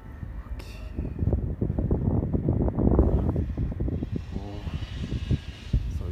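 Wind buffeting the microphone: a low, gusty rumble that swells to its loudest about three seconds in, then eases.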